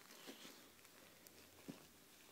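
Near silence: an American bulldog quietly mouthing a plush toy, with a couple of faint soft clicks, the clearer one near the end.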